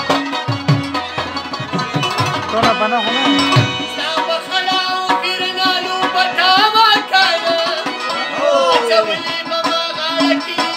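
Live Pashto folk music: two harmoniums play sustained reedy chords, with regular hand-drum strokes for the first few seconds. From about four seconds in, the drum drops out and a man sings a wavering, ornamented melody over the harmoniums.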